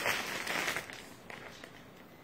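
Clear plastic packaging bag rustling and crinkling as it is handled, loudest in the first second, then fading.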